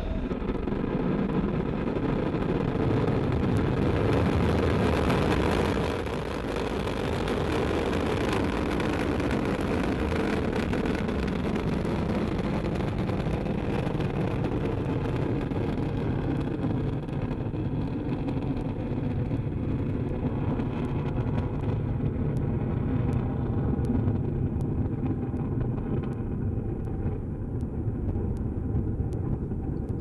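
Ariane 5 rocket at liftoff, its Vulcain main engine and two solid rocket boosters burning: a steady, deep roar. Its higher frequencies thin out over the second half as the rocket climbs away.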